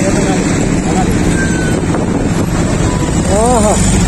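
Motorcycle riding through city traffic: steady engine and road noise with wind buffeting the microphone. A brief voice calls out near the end.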